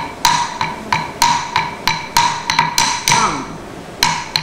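Wooden stick (tattukazhi) beating a wooden block (tattu palagai): sharp, ringing strikes about three a second, keeping the tishra gati (three-count) time for the Alarippu.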